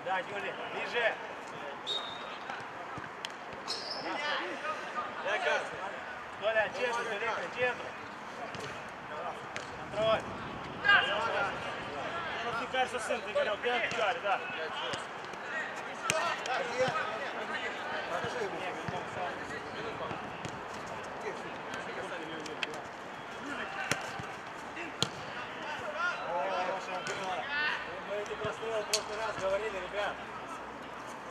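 Footballers calling and shouting to each other during a minifootball match, with the sharp thud of the ball being kicked several times.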